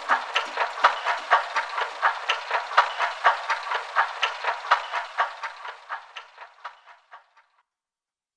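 Rhythmic clicking, about four even ticks a second, fading away to nothing.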